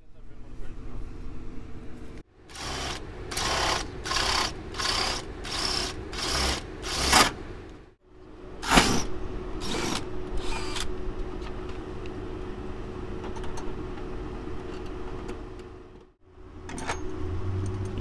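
DeWalt cordless drill boring into the lock cylinder of a U-Haul truck's rear door, drilling out a lock whose key broke off in it. It runs in a string of short bursts, then in a longer steady stretch.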